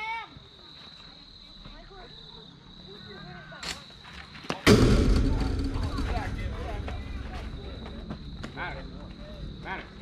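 A hard impact on the chain-link backstop close to the microphone, most likely a pitched ball getting past the catcher. It makes one sudden, very loud bang about halfway through, then a low rumble that fades over several seconds.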